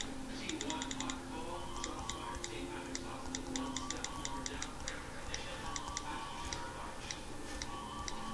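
Phone keyboard clicks as someone texts: quick runs of taps and scattered single taps at an uneven pace.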